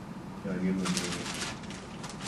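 A man speaking in Sinhala in a low, steady voice.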